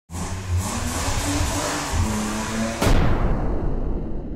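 Intro sound logo: an engine revving in stepped changes of pitch, mixed with music and a whoosh. A sharp hit comes a little under three seconds in and then rings down.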